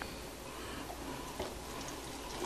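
Quiet handling of an opened metal juice can over a stock pot: faint room noise with one light knock about one and a half seconds in.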